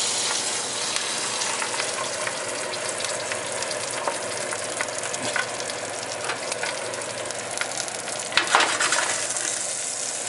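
An egg frying in a small pan, a steady sizzle with fine crackles. There are a few louder clicks near the end.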